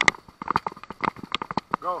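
Rapid, irregular taps and knocks, several a second, with a man's shout of "Go" near the end.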